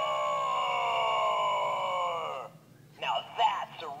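Gund Roaring Rex plush toy's recorded voice giving one long drawn-out roar, slowly falling in pitch, that cuts off about two and a half seconds in. Brief speech follows near the end.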